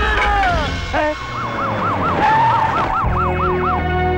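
Police car siren wailing in quick up-and-down cycles, about three a second, for a little over two seconds, over background music. It follows a burst of shouting at the start.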